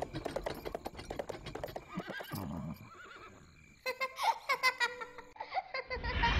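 A horse pulling a cart: hooves clip-clopping, then a horse whinnying about four seconds in.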